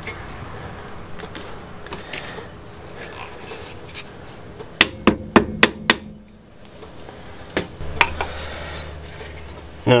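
Hammer tapping a brake pad into place in a brake caliper: five sharp knocks in about a second, about five seconds in, then two more a couple of seconds later, with quieter handling clicks around them.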